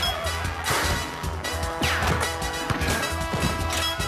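Upbeat cartoon background music over a run of cartoon crash sound effects, each with a sweeping glide, about three of them spaced a second or so apart.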